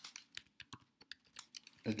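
Computer keyboard keys clicking in quick, irregular keystrokes as a short piece of code is typed, with a word spoken near the end.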